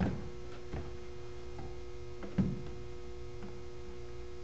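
A few light clicks and knocks of a plastic air-intake resonator being handled and fitted back onto the throttle body, the clearest about two and a half seconds in, over a steady electrical hum.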